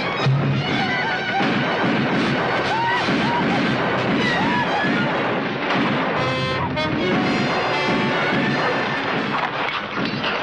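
Loud dramatic film music over a gunfight, with scattered gunshots and a crash among the music.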